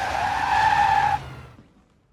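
Car tyres squealing as a taxi brakes hard to a stop, in a film's sound effects: one loud, steady squeal that fades out after about a second and a half.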